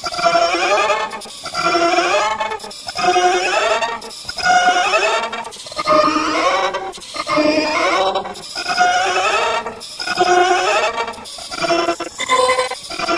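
Digitally effect-processed audio: a pitched sound with a strongly wavering pitch, coming in short repeated phrases about every second and a half with brief gaps between.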